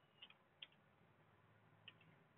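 A few faint, irregular clicks of computer keyboard keys being tapped, about four in two seconds, against near silence.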